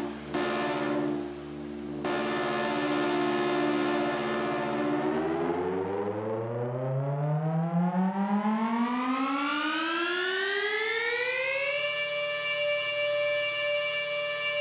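Psytrance breakdown with no beat: held synthesizer chords, then from about five seconds in a rising synth sweep climbs steadily in pitch for about seven seconds and holds on a high chord, the build-up before the drop.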